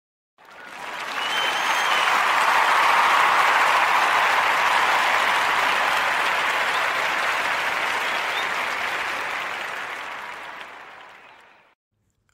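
Applause from a crowd that fades in, swells to a peak in the first few seconds and slowly fades out before the end, with a brief high tone near the start.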